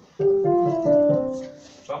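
Keyboard playing piano tones: a short run of notes that start one after another and ring together, beginning about a fifth of a second in and fading out by about a second and a half. It sounds the key for the next vocal warm-up exercise.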